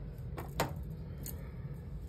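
Faint handling of thin die-cut cardstock as the small cut-out pieces are poked free by hand, with a short click about half a second in and a softer one a little later.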